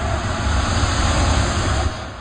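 A swelling whoosh of noise with heavy bass, used as an intro sound effect: it holds loud and then begins to fade near the end.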